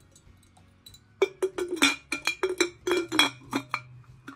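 Ceramic head-shaped lid of a gingerbread-man teapot clinking and knocking against the pot's rim in a quick string of sharp ringing clinks as it is fitted back on without seating. The clinks start about a second in.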